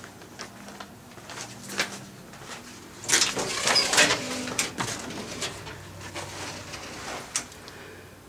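A metal security screen door and the front door behind it being opened: a few sharp latch and handle clicks, then a louder stretch of rattling and scraping about three seconds in as the doors swing, and a few more scattered knocks.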